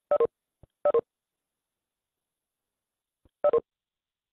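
Video-call notification chime, a short two-note tone stepping down in pitch, sounding three times: twice within the first second and once more near the end. Each chime signals a participant leaving the meeting.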